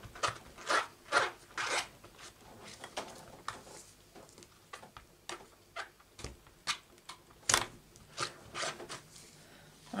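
An inked rubber stamp being rubbed clean of black ink in brisk rubbing strokes, about two a second: one run at the start, a quieter gap, then another run later on.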